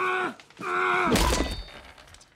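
A man crying out in pain twice, each cry falling in pitch, and a heavy thud of a blow about a second in, near the end of the second cry.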